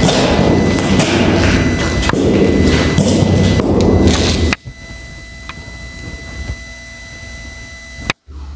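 Deer-skin hand drum struck with a wooden beater among a loud, dense wash of acoustic instruments. The ensemble cuts off abruptly about halfway through, leaving a much quieter, faint sustained ring.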